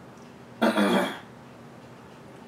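A person clearing their throat with one short, loud cough of about half a second, just over half a second in.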